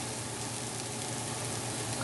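Chopped onion, green vegetables and bacon frying in oil in a nonstick skillet, a steady even sizzle, with a low steady hum underneath.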